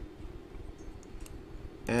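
A faint computer mouse click or two against low room noise, as a shape is selected and moved in a drawing program.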